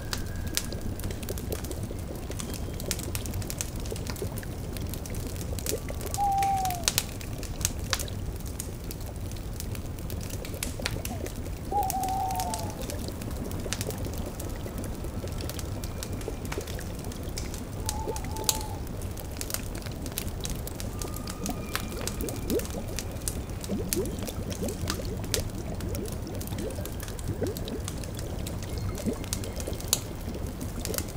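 Layered ambience of a bubbling cauldron and a crackling fire, with an owl hooting three times, about six, twelve and eighteen seconds in.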